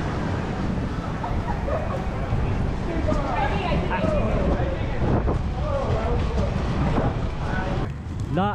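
Steady low rumble of wind on the microphone and inline skate wheels rolling on pavement while skating, with voices of people talking faintly in the middle.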